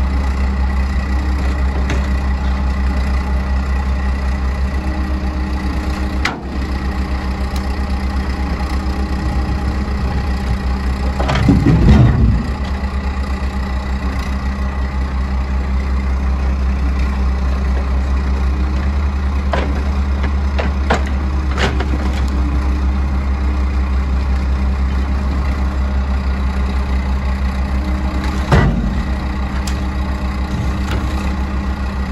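Diesel engines of an excavator and a dump truck running steadily while the excavator loads ash logs into the truck's metal dump body. A loud thump of logs landing comes about twelve seconds in, and another near the end.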